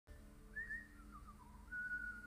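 A whistled tune: a short high note, a few notes stepping down in pitch, then a long held note near the end, over a low steady drone.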